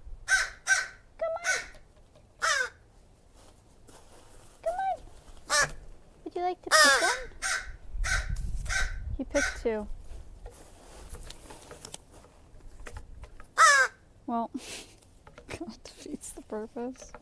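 A crow giving a string of short, varied calls and caws at close range, with a quieter spell about two-thirds of the way through and one loud call near the end.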